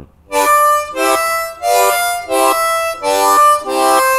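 C diatonic harmonica played in second position with tongue blocking: a phrase of about seven short chords, each cut off by the tongue after roughly half a second, going up to the hole-six blow.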